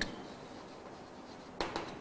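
Chalk writing on a blackboard: faint scratching strokes, with a couple of brief louder strokes near the end.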